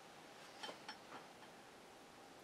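Near silence: faint room tone, with three faint, light clicks in quick succession a little over half a second in.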